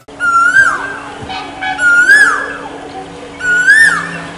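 A bird calling three times, about a second and a half apart, each call a slurred note that rises and then drops. A steady low hum runs beneath.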